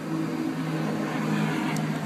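A steady low mechanical hum from a running motor, holding one pitch over a faint wash of background noise.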